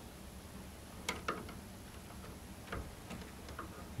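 A handful of faint, light clicks and taps from handling around a microwave's plastic door-switch connector, scattered over quiet room tone.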